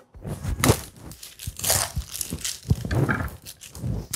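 Chef's knife cutting through a raw onion on a wooden cutting board: a series of irregular crunches and knocks as the blade splits the onion and meets the board.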